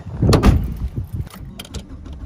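A car door opening and shutting, with the loudest thump about half a second in, followed by lighter clicks and knocks.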